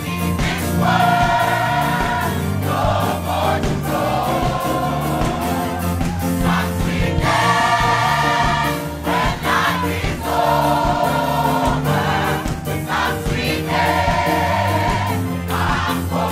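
Gospel choir singing in phrases a few seconds long, over a band with a steady beat.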